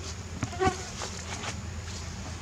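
A flying insect buzzing briefly close to the microphone about half a second in, over steady low background noise.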